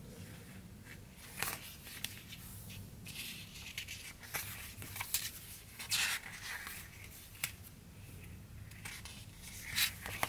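Pages of a sticker book being flipped and pressed flat by hand: stiff sticker sheets rustling and flicking in short, scattered bursts.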